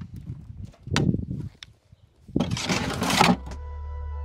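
Shovel scooping compost from a wheelbarrow and tipping it onto a raised bed: a short scrape about a second in, then a longer scrape from about two and a half seconds. Background music comes in near the end.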